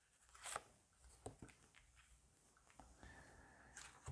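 Near silence with a few faint, brief rustles and taps of tarot cards being handled, as a card is drawn from the deck and laid on the table.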